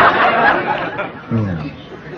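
Studio audience laughing at a punchline, a broad wave of laughter that fades over about a second, followed by a short spoken sound from one voice.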